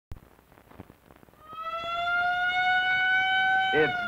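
A siren wailing, starting about a second and a half in and slowly rising in pitch, the loudest sound here. Before it there is a click at the very start and faint crackle from the old film soundtrack.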